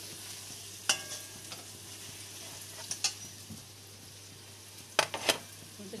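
Food sizzling steadily in hot oil in a pan, with a few sharp metallic clinks of a utensil against metal, about a second in, around three seconds, and twice near the end.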